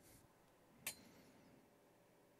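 A single sharp click just under a second in, with a short metallic ring, amid near silence: the oscilloscope plug-in's rotary VOLTS/DIV switch being turned one detent, back to the 50 millivolt range.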